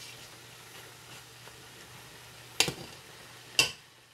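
Cabbage, bacon and smoked sausage frying in a pot, a steady low sizzle, with two sharp knocks about a second apart near the end as the cooking utensil strikes the pot.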